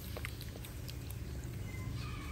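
Broth with lemongrass and leaves boiling in a pot: a low steady rumble with a few faint scattered pops.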